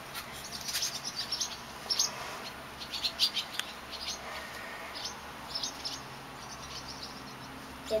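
A flock of swallows calling as they swoop: many short, high chirps, coming thickly at first and thinning out in the last couple of seconds.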